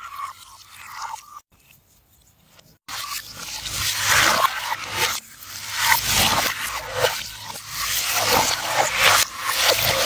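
A cloth towel rubbed over a wet face, then from about three seconds in, water splashing and streaming as hands rinse the face, the noise surging and easing.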